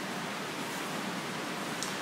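Steady hiss of room tone and recording noise in a pause between speech, with one faint tick near the end.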